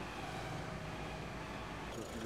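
Quiet, steady street ambience with a low hum of distant traffic.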